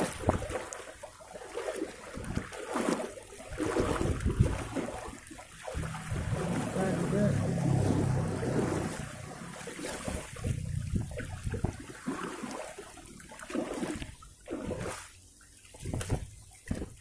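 Shallow seawater washing and splashing over a stony shore in uneven surges, with voices at times.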